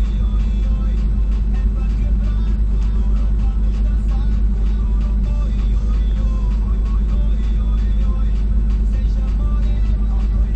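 2002 Jeep Liberty engine idling steadily at about 980 rpm, heard from inside the cabin, with music playing along with it.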